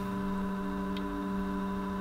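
A steady low hum with a few fainter held tones above it, and a faint tick about a second in.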